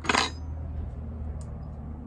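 kWeld battery spot welder firing a weld through nickel strip onto an 18650 cell: one sharp crack right at the start that dies away within a quarter second. A faint click follows about a second and a half later, over a steady low hum.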